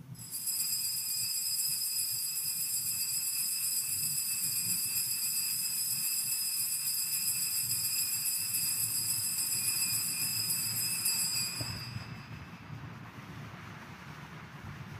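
Altar bells rung continuously at the elevation of the host just after the words of consecration, a steady high ringing that stops about eleven and a half seconds in.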